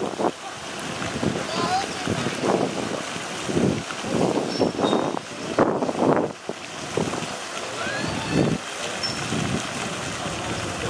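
Indistinct chatter of onlookers' voices coming and going over a steady outdoor hiss, with a few short high chirps.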